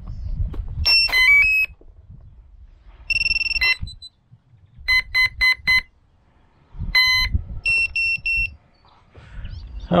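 Electronic power-up beeps from the FX-61 Phantom flying wing's onboard electronics as it is set up. A quick run of stepped tones comes first, then a long tone, then two groups of four short beeps.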